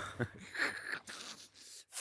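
A man's breathy chuckle: a few short puffs of laughing breath through a grin, with no words.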